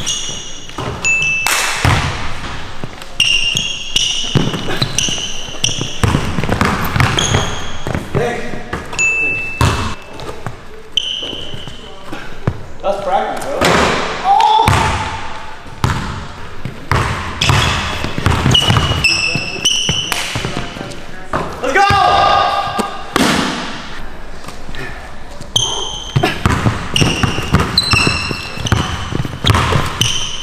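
Basketball bouncing again and again on a hardwood court, irregularly, with short high-pitched sneaker squeaks on the wooden floor in between.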